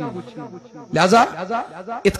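A man's voice speaking into a microphone, soft and low at first, then louder from about a second in, with a faint hiss under the quieter part.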